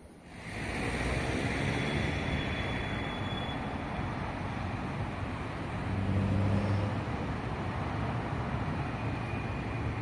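City road traffic: a steady hum of cars on the street, with one vehicle passing louder about six seconds in.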